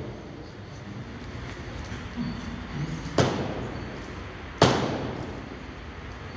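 A hand-held postmark stamp strikes twice on paper laid on a table, cancelling a commemorative postage stamp. The two sharp knocks come about a second and a half apart, the second louder, and each trails off in the room's echo.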